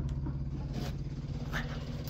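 Small electric fuel lift pump running with a steady low hum, priming the fuel line to the small outboard, with a few faint handling knocks.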